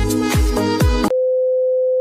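Electronic music with about three heavy bass kicks cuts off abruptly about a second in. It gives way to a steady single-pitched beep, the test tone that goes with a TV colour-bar test card.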